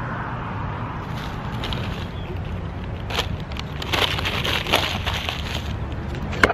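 Steady outdoor road-traffic rumble, with a run of crackling clicks and rustles through the second half.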